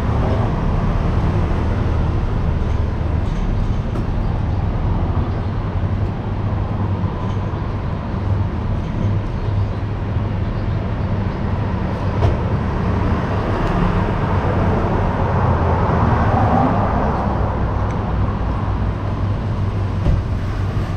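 Steady low outdoor rumble, loud and even throughout.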